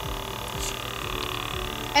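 Small airbrush makeup compressor running on its low setting, a steady hum with several steady tones.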